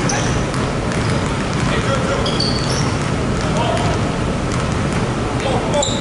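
Several basketballs being dribbled at once on a hardwood gym floor: a busy, irregular patter of overlapping bounces.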